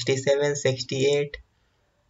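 A man's voice reading out a number in Hindi, followed by a single short click about one and a half seconds in.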